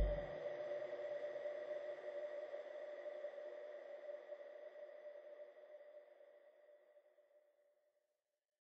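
The closing tail of an electronic dance track: after the beat cuts off, a sustained electronic tone lingers and fades out over about six seconds.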